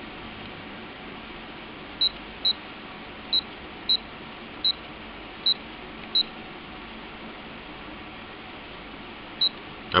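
Handheld multifunction anemometer's keypad beeping as its buttons are pressed: eight short, high beeps at uneven spacing, each confirming a press while the duct surface area is set for the airflow-volume reading.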